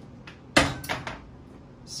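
Kitchenware being handled on a counter: one sharp knock about half a second in, then a couple of lighter clinks.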